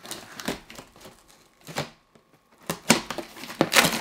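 Large cardboard shipping box being opened by hand: cardboard and packing rustling, scraping and tearing in a few sharp strokes. There is a short quiet pause about halfway, and the loudest strokes come near the end.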